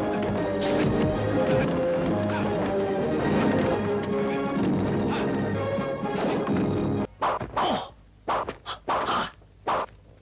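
Martial arts film soundtrack: pitched score with dubbed hit sound effects landing in its rhythm. About seven seconds in the music cuts off suddenly, and a run of short swishes follows, a long wooden staff being swung.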